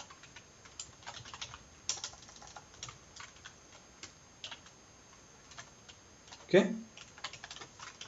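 Computer keyboard typing: quiet, irregular keystrokes in short runs with pauses between them.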